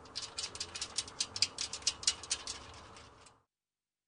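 Light metallic clicking and rattling from aluminium greenhouse staging parts being fitted and bolted together by hand, a quick uneven run of about six clicks a second that stops about three seconds in.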